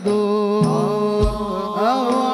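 Men singing sholawat, an Arabic devotional chant, with a long held note that then bends and glides in melismatic runs, over low beats.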